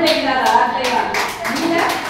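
Hands clapping in a hall, many quick irregular claps, with a woman's voice over them.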